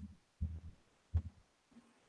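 A near-silent pause holding two faint, short low thumps, one about half a second in and one just over a second in.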